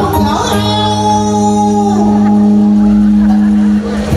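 A singer holds one long note over backing music in a Vietnamese parody of a bolero song, and it cuts off abruptly just before the end.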